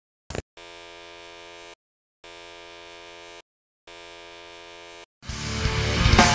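A short click, then three steady electric buzzes, each about a second long with brief silences between them; near the end rock music swells in, growing louder.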